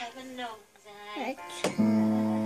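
Piano keys played by a small child: faint notes ring under brief talk, then about three-quarters of the way through a low note is struck loudly and rings on, slowly fading.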